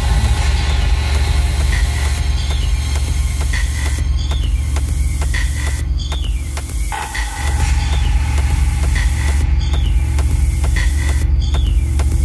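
Techno DJ mix playing: a steady kick drum and deep bass line with repeating high synth notes. The bass drops out briefly about seven seconds in and then comes back.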